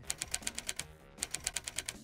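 Typing sound effect: two quick runs of sharp key clicks, about eight a second, with a short pause about a second in, over soft background music.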